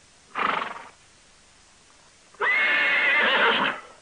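A horse whinnies twice: a short call, then a longer, steadier one of about a second and a half.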